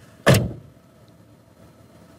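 A car door shutting with one solid thud near the start.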